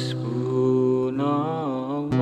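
A man sings a sholawat over an acoustic guitar. Chords strummed near the start ring on, and about a second in the voice enters with a long note held with vibrato.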